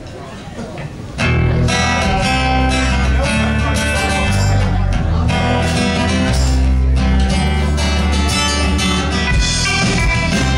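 Live rock band starting a song about a second in, with strummed acoustic and electric guitars over drums, after a brief quieter moment of room noise.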